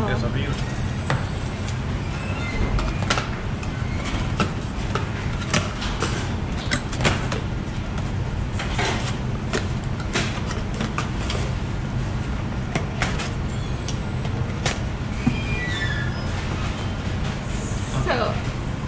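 Café room noise: a steady low hum with scattered clinks and knocks and murmuring voices in the background.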